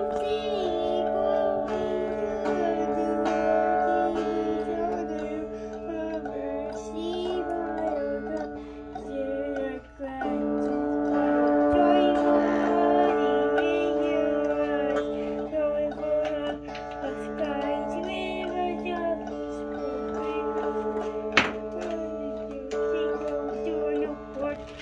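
A child's electric guitar played through an amplifier, strings strummed and left ringing as a sustained drone, with a child's voice singing a wavering tune over it. A sharp click about 21 seconds in.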